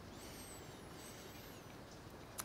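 A quiet room with faint, very high-pitched bird chirps: several short notes gliding up and down during the first second and a half.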